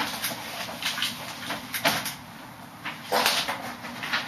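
Dry-erase marker drawing on a whiteboard: several short scratchy strokes, the longest about three seconds in.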